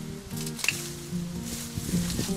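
Background music with steady held notes, over crackling and rustling of dry bamboo canes and leaf litter as the canes are snipped at the base with a hand wire clipper. A sharp snap comes about a third of the way in.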